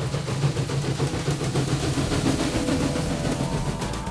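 Steam locomotive running along the track, a steady rumble with hiss. Faint held tones join about halfway through.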